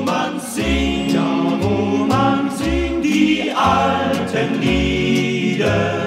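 A 1958 German Schlager record playing: a vocal group sings held harmonies between lines of the song, over a band whose bass sounds a low note about once a second.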